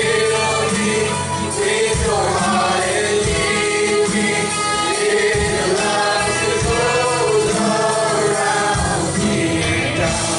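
Live worship band playing a gospel song: several voices singing together into microphones over strummed acoustic guitar and a drum kit keeping a steady beat.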